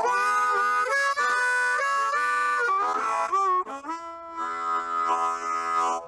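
Blues harmonica played solo, cupped in both hands: a run of quickly changing notes and bends, then a long held chord over the last second and a half.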